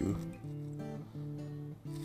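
Background music of plucked guitar notes, held and changing about every half second.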